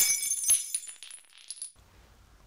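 A faint, high metallic shimmer that rings on and fades away over about a second and a half, with two soft clicks along the way.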